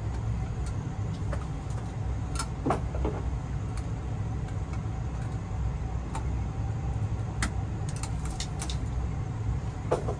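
Steady low machinery rumble, typical of furnace-room equipment running, with a scattering of short clicks and rustles from electrical cable being handled and worked with pliers at a plastic device box.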